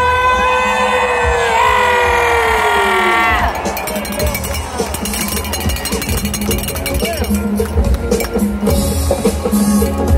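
Parade crowd noise. A loud held tone slides down in pitch and ends about three and a half seconds in. Then come rapid claps and clanks, like cowbells and hand-clapping, over a general crowd din.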